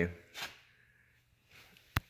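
A man's voice trails off, followed by a short breathy hiss. Then comes quiet room tone, broken near the end by one sharp click.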